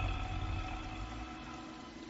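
Film soundtrack: a low rumbling drone under faint held notes. The rumble fades away over about the first second, leaving the quiet held notes.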